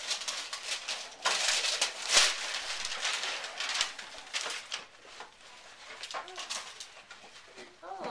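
Wrapping paper being torn and crumpled off a gift box: a run of rough ripping and crinkling bursts, loudest in the first half, dying away about halfway through.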